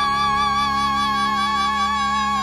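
Male singer's voice holding one long high note with light vibrato over a steady held backing chord, in a live vocal performance.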